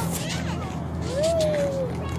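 Voices of people playing on the ice, with one drawn-out call that rises slightly and then falls, starting about a second in, over a steady low hum.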